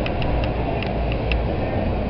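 City street background noise: a steady low rumble with a few faint, irregular light clicks.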